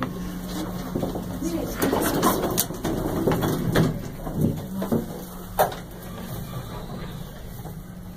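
Otis Autotronic elevator car riding up with a steady low hum, under laughter and low voices. A single sharp click sounds about five and a half seconds in.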